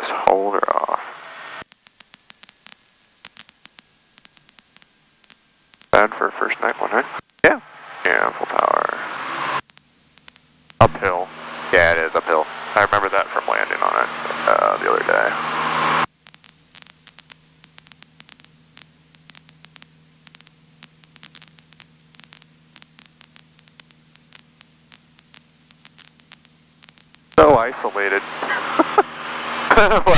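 Voices over a cockpit radio and headset feed, with static: three stretches of talk separated by quiet gaps with faint clicks. A low steady hum runs under the middle stretch and the long gap after it.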